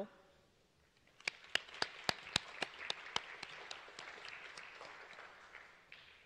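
Audience applauding, starting about a second in, with a few sharp individual claps standing out over the rest and dying away near the end.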